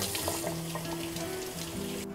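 Kitchen faucet running over a raw tuna steak held in the hands above a stainless steel sink: a steady hiss of water that fades near the end. Background music with long held notes plays under it.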